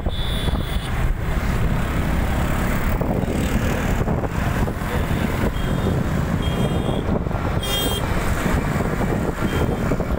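Steady rumble of road traffic heard from a moving vehicle: engine and road noise with trucks and a bus nearby. A few short high-pitched tones sound about seven to eight seconds in.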